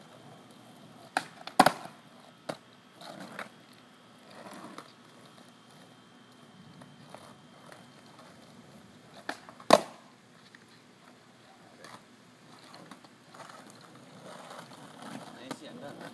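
Skateboard on asphalt: sharp clacks of the tail snapping down and the board landing during ollie attempts. There is a cluster of clacks between about one and two and a half seconds in, and a loud pair near ten seconds.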